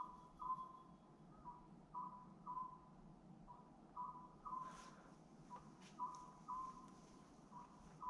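Faint, short electronic beeps at one steady pitch, repeating unevenly about one and a half times a second, with a few faint clicks between them.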